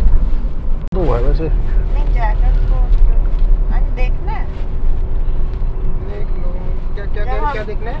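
A loud low rumble breaks off abruptly about a second in. Then comes the steady low drone of a car's cabin while driving through traffic, with brief snatches of talking voices.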